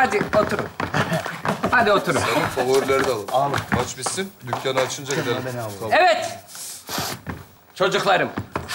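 Speech: people's voices talking in quick turns, with nothing else standing out.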